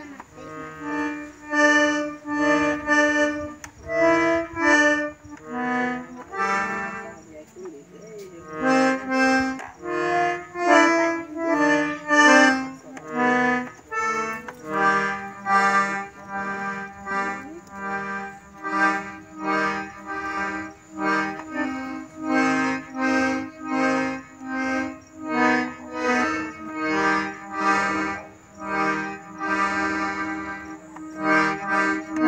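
Piano accordion (sanfona) playing a tune, melody notes over bass and chords, in a steady pulsing rhythm.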